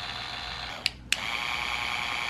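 Battery-powered Vanity Planet Ultimate Skin Spa facial cleansing brush with a rotating head, its motor running with a steady hum at its first speed. About a second in, two clicks of the button come with a brief stop between them, and the motor runs on slightly louder at its second speed.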